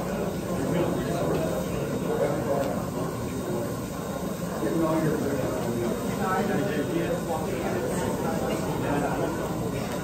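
Steady, indistinct chatter of many people talking at once in a large, busy room.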